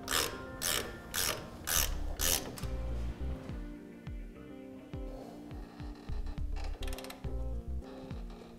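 Hand ratchet wrench clicking through repeated strokes as it tightens the mounting nuts of an electric trailer drum brake assembly onto the axle flange, about two strokes a second at first, quicker later.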